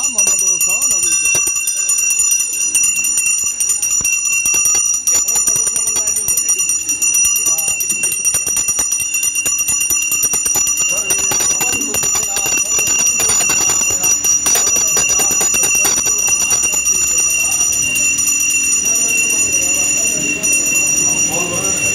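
Small bells jingling without a break, a steady high ringing over the voices of a crowd.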